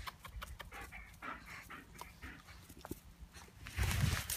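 A dog panting close by, with irregular rustling and steps on dry grass and leaf litter. A louder low rumble comes near the end.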